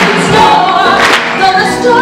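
A woman singing a Broadway show tune into a microphone, with a live orchestra accompanying.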